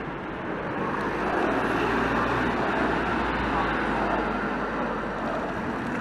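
Street traffic noise with a low engine rumble from a vehicle going by, and voices mixed in underneath.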